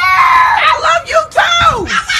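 A high-pitched voice screaming: a held shriek at the start, then short yells that slide down in pitch.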